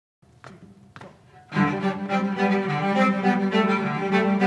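Two soft taps about half a second apart, then three cellos come in together about a second and a half in, playing a tune over a low sustained note.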